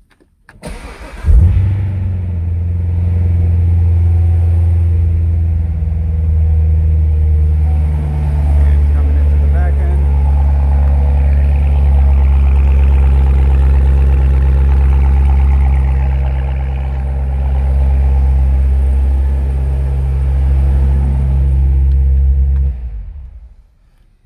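A 2015 Corvette Z06's supercharged 6.2-litre LT4 V8 cranking briefly and catching about a second in with a loud flare, then idling steadily inside a garage. It is shut off shortly before the end.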